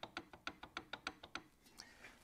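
Old Harvey MG-36 miter gauge rocked back and forth in a table saw's miter slot, its bar knocking against the slot in a quick faint run of about seven light clicks a second that stops about a second and a half in: the sign of play in the older miter bar.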